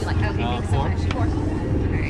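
Voices talking for about the first second, over a steady low rumble.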